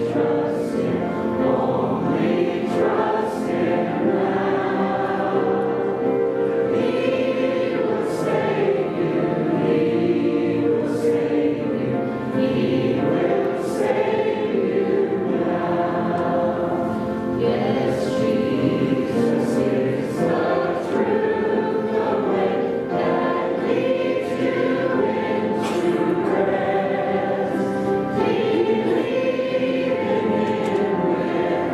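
Hymn singing with many voices, led by a woman and a man singing into microphones, held notes running on without a break.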